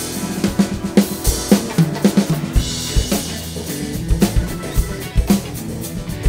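Drum kit played in a groove along with the recorded song: bass drum and snare hits, with a cymbal ringing briefly near the middle.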